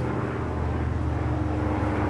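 A steady low mechanical hum with a few unchanging low tones in it.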